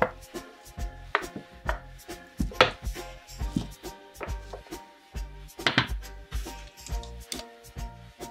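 Rolling pin knocking and rolling on chilled shortcrust pastry over cling film on a wooden board, with irregular knocks and dull thuds. The dough is cold from the fridge and very hard.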